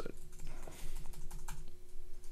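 Computer keyboard typing: a handful of irregular key clicks as text is typed and then deleted.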